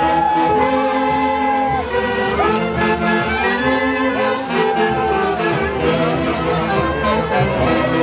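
Live tunantada music played by a Huancayo folk band, melody instruments holding long notes that slide up into pitch over a steady accompaniment.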